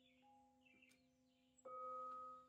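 Soft, steady held tones of meditation music, with faint bird chirps over them. About one and a half seconds in, a bell-like chime is struck and rings on as a clear, sustained tone.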